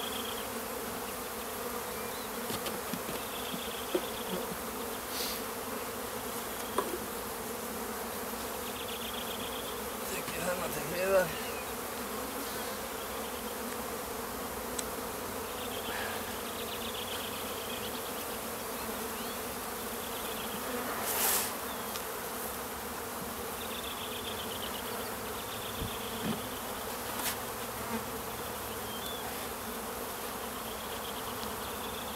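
A honeybee colony buzzing steadily from an opened hive, the dense hum of many bees. A few short knocks sound as the wooden hive boxes are handled.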